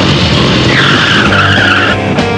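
Motorcycle skidding: a high, slightly wavering tyre squeal that starts just under a second in.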